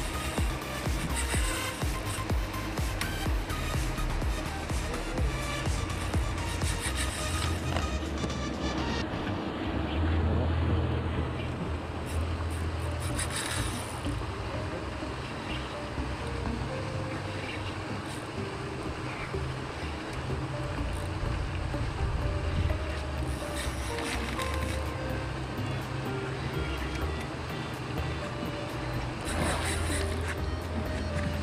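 Background music with a steady, changing bass line.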